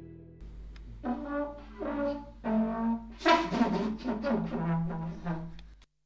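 Trumpet playing a halting phrase of four notes, the last held for about two and a half seconds, over a low steady hum. It is a take rejected straight after as no good.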